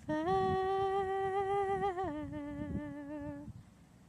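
A voice humming a slow tune in long held notes, the first higher and the second a step lower from about two seconds in, fading out shortly before the end.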